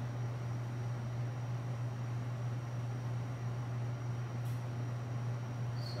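Steady low hum with an even hiss of background room noise, no speech.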